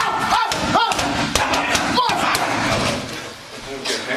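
Kicks and punches smacking into handheld striking pads in a quick series over the first two or three seconds, with short sharp shouts between the strikes.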